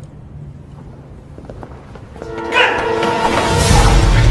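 Action-film soundtrack: a low rumble, then about two seconds in a sudden loud swell of music with long held tones as a fight scene starts.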